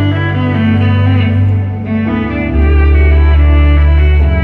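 Electric violin, bowed, playing a melody of long held notes with vibrato over steady low bass notes, live through a concert PA; the bass steps down to a lower note about two and a half seconds in.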